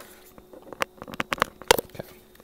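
Handling noise of cables and small plastic parts: a quick, uneven series of clicks and knocks, starting about half a second in, with the loudest knock near the end.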